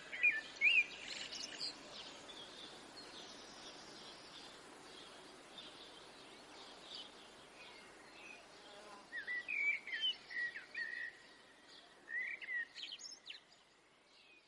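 Small birds chirping: a few quick chirps at the start, then more chirping from about nine seconds until shortly before the end, over a faint steady hiss.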